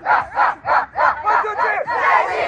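A group of boys chanting the school's initials, "C-I-C!", in loud rhythmic shouts, about three a second.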